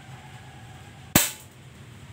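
A gun fires a single sharp shot about a second in, with a brief ringing tail.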